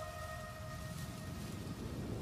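Background music fading out in the first moment, leaving a steady low rumble of indoor ambient noise.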